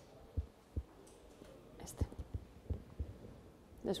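Handling noise from a handheld microphone: a few soft, irregular low thumps and clicks as it is gripped and knocked while laptop controls are worked, with a murmured word about halfway.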